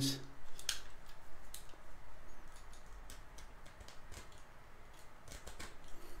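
Utility knife cutting through the stitched seam of a baseball cap's visor: faint, irregular little snicks as the threads give, with a quicker cluster a little before the end.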